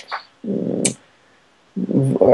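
A short, low, rough vocal sound about half a second long, like a creaky drawn-out hesitation, ending in a brief high click.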